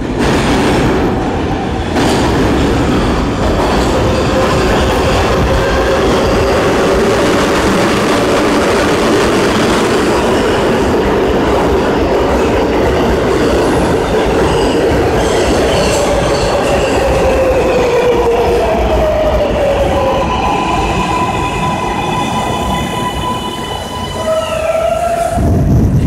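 R143 subway train arriving at the platform: loud running and wheel noise as the cars pass. In the second half the motor tones fall in pitch as it brakes, with a stepped series of falling higher tones before it comes to a stop and a thump near the end.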